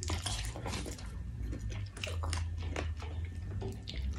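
Close-up biting and chewing of spicy chicken feet, with many irregular small crunches and clicks as the skin and cartilage are chewed off the bone.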